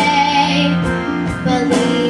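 A girl singing into a handheld microphone over backing music, holding a note with vibrato in the first second before moving on.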